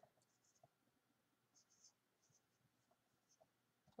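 Faint felt-tip marker writing on a board: a handful of short, quiet strokes as letters are written, over near silence.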